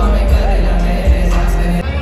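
Live hip-hop concert over a PA: a loud beat with heavy bass and a rapper's vocals, recorded from within the crowd.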